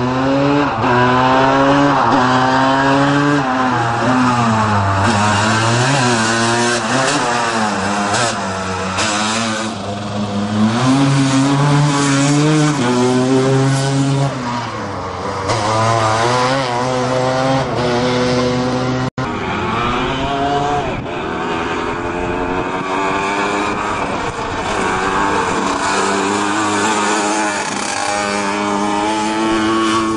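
Racing Piaggio Ape three-wheeler engine revving hard up the hill climb, its pitch climbing and dropping again and again as it shifts through the gears. About two-thirds of the way through the sound cuts out for an instant, then more climbing revs follow.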